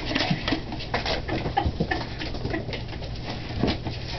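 Ferrets scrambling about, with many quick clicks and scrapes and a few short squeaky chirps mixed in.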